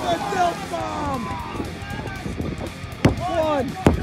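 Referee's hand slapping the ring mat twice near the end, about a second apart, counting a pinfall, under continuous excited shouting.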